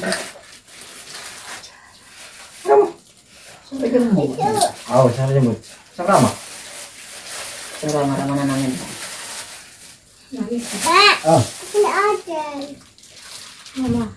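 Voices in a small room: indistinct talk, with a young child's high, up-and-down vocalizing later on. Short rustles come between the voices.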